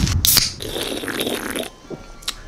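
Plastic packaging rustling and crinkling as an item is pushed into a poly mailer bag, with a few sharp crackles at first and then steady rustling that stops shortly before the end.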